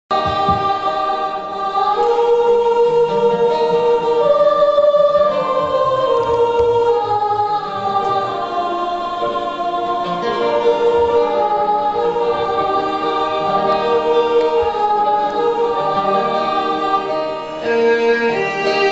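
Live band playing the slow instrumental opening of a sentimental Hindi film song: a keyboard carries a long, held, string-like melody over acoustic and electric guitars.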